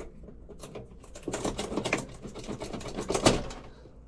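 A quick run of clicks and rattles from hands handling wiring and the sheet-metal cabinet of an air handler, starting about a second in and ending with one louder knock near the end.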